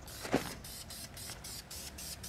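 Aerosol spray paint can hissing in quick short strokes, about four bursts a second, as paint goes onto a car wheel. A brief thump comes about a third of a second in.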